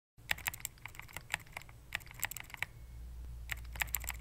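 Computer keyboard keys clicking in quick, irregular runs of keystrokes. A low steady hum comes in about three-quarters of the way through.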